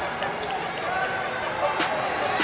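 Live basketball game sound in a gym: a basketball bouncing on the hardwood court, with sneakers squeaking and crowd voices behind. There are sharp impacts near the end.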